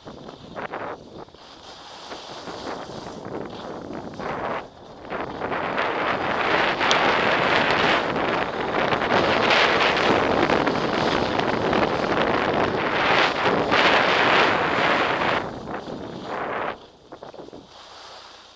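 Wind buffeting the microphone of a skier's camera, mixed with skis hissing and scraping over packed snow. It builds as the skier gathers speed and drops away sharply about a second before the end as he slows.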